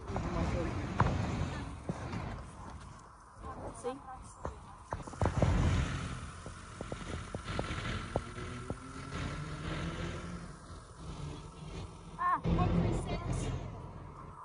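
Busy street traffic on a bridge, with a double-decker bus passing and its engine pitch rising midway, mixed with scattered footsteps or clicks and a couple of brief snatches of voices.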